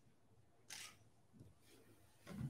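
Near silence: room tone during a pause, with one faint, brief noise a little under a second in.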